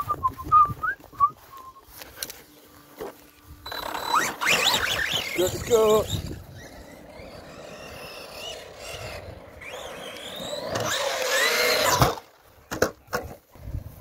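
Arrma Big Rock RC monster truck's electric motor whining as it is throttled up and eased off, with tyre noise, the pitch sliding up and down. It is loudest in two spells, about four seconds in and again from ten to twelve seconds, and cuts off sharply just after twelve seconds.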